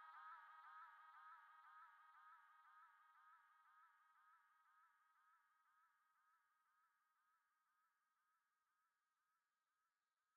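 Near silence, holding only a very faint, steady tone with a regular wavering pitch that slowly fades away.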